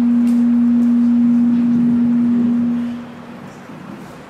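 A loud, steady, low hum-like tone from a public-address system, typical of microphone feedback ringing. It fades out about three seconds in, leaving quiet room noise.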